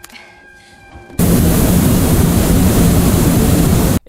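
Flamethrower blast: a loud, steady rushing roar that starts suddenly about a second in and cuts off abruptly at the end.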